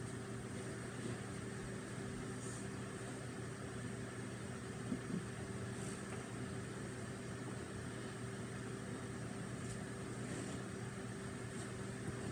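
Steady room hum from a running appliance or fan, with a constant low drone, a faint high whine and a few soft ticks.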